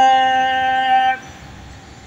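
A man's voice chanting a devotional verse, holding a long final note that stops about a second in, leaving only faint outdoor background.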